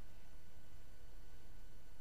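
Faint steady background hiss and low hum of the recording, with a thin steady tone. No other sound.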